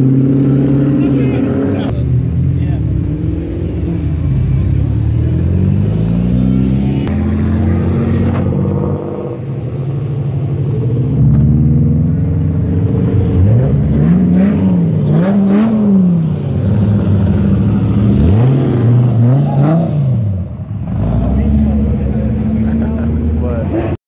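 A small motorcycle and cars pulling away one after another, their engines accelerating. Past the middle come two pairs of quick rev blips, each rising and falling sharply.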